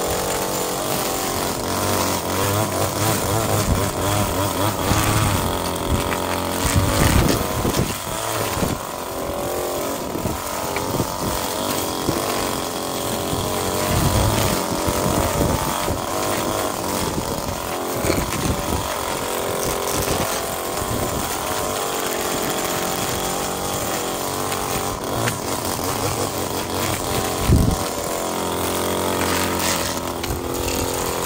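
Gas two-stroke string trimmer running at high revs, its engine speed rising and falling as the spinning line cuts through turf and dirt to scrape buried pavers clean.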